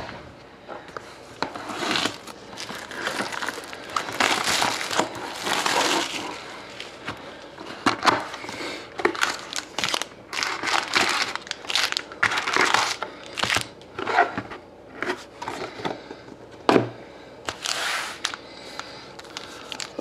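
A sealed hockey card box being opened by hand and its foil card packs handled: irregular crinkling and crackling of plastic wrap and foil wrappers.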